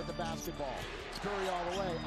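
Basketball being dribbled on a hardwood court, heard through a game broadcast under quieter commentary.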